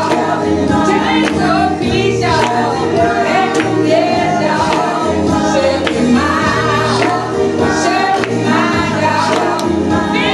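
Congregation singing a gospel song together with a steady beat and sustained low instrumental notes.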